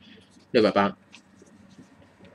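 Marker pen writing on a paper worksheet: a few faint, short strokes as a number is written, with one spoken syllable about half a second in.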